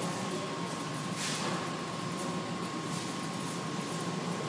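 Steady machinery hum and hiss, with a thin, steady high whine, and a faint brief swell of noise about a second in.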